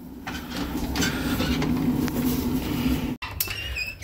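Garage door opener running, a steady mechanical rumble and hum that cuts off suddenly about three seconds in.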